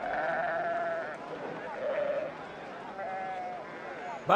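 Sheep in a flock bleating: a long quavering bleat of about a second, then two shorter ones a second or so apart.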